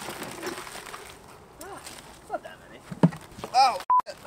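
A pile of live spiny lobsters tipped out of a cooler onto a person, their shells rattling and scraping for about the first second. Then short yelps and cries from a man, with a sharp knock about three seconds in.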